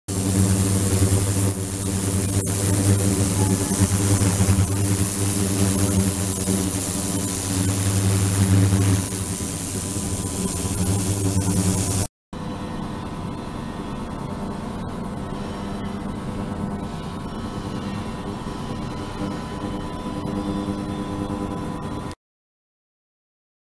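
Steady electric hum of a small motor-driven circulation pump and ultrasonic equipment running on a water tank, with a thin high whine above it. About halfway through, the sound cuts to a quieter, steadier hum.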